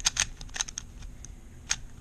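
Plastic clicking of a MoYu WeiLong GTS3 M magnetic 3x3 speed cube being turned fast in a solve: a quick run of clicks in the first second, then one more click near the end. The cube is dry, not yet lubricated.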